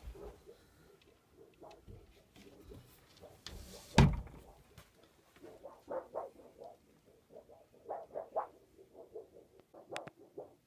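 A small closet door pulled by its deer-antler handle, with one loud thump about four seconds in as it shuts. It is followed by a run of short, quick squeaks.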